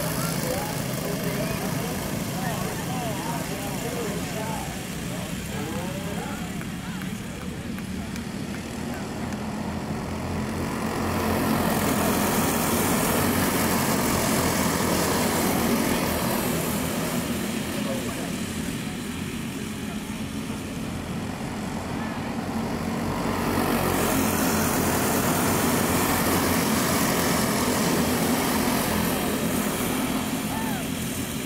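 A pack of dirt-track racing go-kart engines at full throttle, their pitch rising and falling as the karts go through the turns. The sound swells twice as the field comes past close by.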